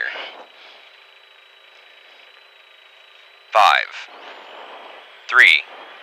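Dodge Neon SRT-4's turbocharged four-cylinder idling faintly at the stage start, heard thinly through the in-car intercom, with a faint steady high whine for a couple of seconds. A voice counts down "five", then "three".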